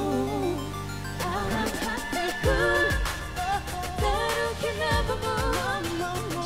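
Pop song performed live: singing over a backing track. About a second in the low bass drops away, and a steady low beat with ticking cymbals comes in about halfway through.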